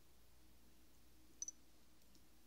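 Near silence, broken about one and a half seconds in by two quick, light clicks close together, from fingers tapping the smartphones while the open apps are cleared.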